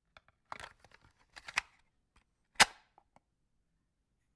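A handful of sharp, irregular clicks and pops with near silence between them, the loudest about two and a half seconds in.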